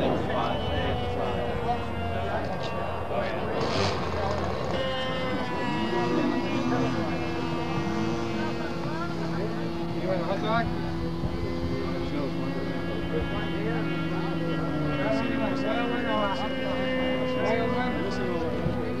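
A small model-aircraft engine running steadily, its pitch shifting about five seconds in and again near fifteen seconds, with people talking over it.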